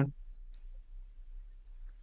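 Quiet low hum with a soft computer mouse click about half a second in and a fainter one near the end.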